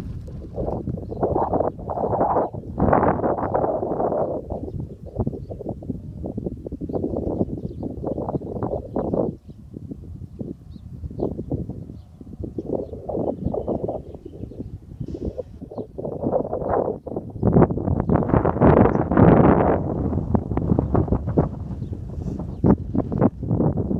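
Wind buffeting the microphone of a camera filming from a moving car, with road rumble underneath. It surges and falls back irregularly and is loudest a few seconds before the end.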